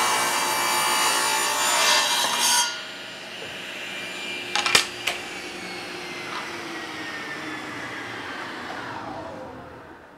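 Table saw ripping a long quartersawn oak board lengthwise, loud and steady; the cut ends sharply about two and a half seconds in. After two sharp clicks near the middle, the saw blade spins down with a slowly falling whine.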